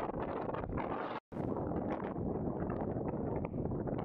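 Wind buffeting the camera microphone, a continuous rough rumble that cuts out for an instant about a second in.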